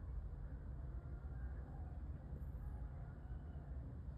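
Quiet room tone: a faint, steady low rumble with no distinct sounds.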